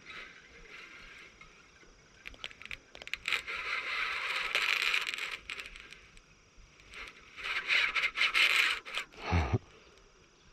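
Baitcasting reel buzzing in two bursts of a few seconds each, dense with fine clicks, as a hooked salmon is played on it. Near the end there is a single low thump.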